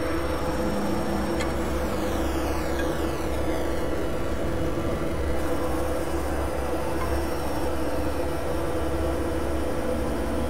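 Experimental electronic synthesizer drone: a dense, noisy industrial texture over steady low tones, with a deep rumble that drops in and out. High filter sweeps fall in pitch from about a second and a half in to about four seconds in.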